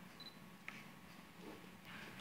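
Near silence: room tone with a steady low hum and two or three faint clicks.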